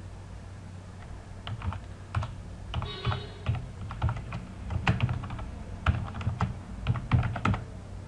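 Typing on a computer keyboard: irregular clusters of keystrokes, starting about a second and a half in, as a short terminal command is entered.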